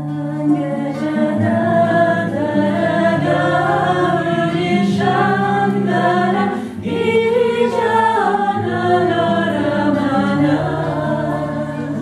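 Several women singing a devotional Shiva bhajan together, accompanied by a strummed nylon-string classical guitar holding low notes under the voices. There is a brief break between sung phrases a little past halfway.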